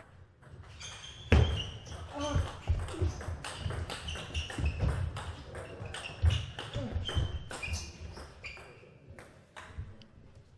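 Table tennis rallies in a large hall: a celluloid ball ticking off rubber-faced bats and the table in quick irregular clicks, with short high squeaks from players' shoes on the court floor and low thuds of footwork.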